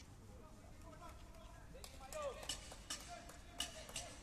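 Faint distant shouts of players calling on the pitch, with a few sharp clicks or knocks in the second half.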